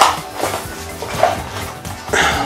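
Metal tool hooks and loose screws clinking inside a plastic blister pack as it is handled, a few sharp clinks, with music playing in the background.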